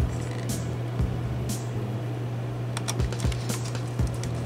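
A screwdriver turning small screws into a model car's body, giving light scattered clicks and scrapes, several close together near the end.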